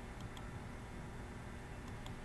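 Quiet room tone with two pairs of faint computer mouse clicks, one pair near the start and one near the end.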